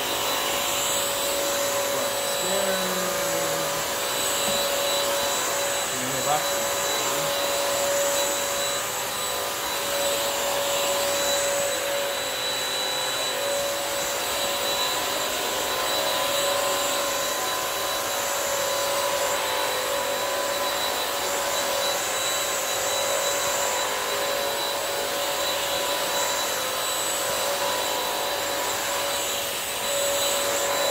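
Bissell CrossWave wet-dry mop-vac running steadily as it is pushed over wet tile, a continuous motor whine with no change in pitch. There is a brief knock about six seconds in.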